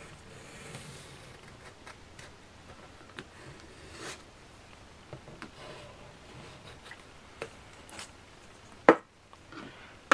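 Pencil scratching faintly on thick plastic card as it traces around a tape reel, with small taps and clicks from the reel and pencil. A single sharp knock comes about nine seconds in.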